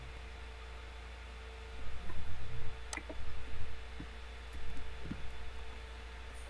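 A few faint, sharp clicks of a computer mouse and keyboard as a password is typed in, over a steady low electrical hum.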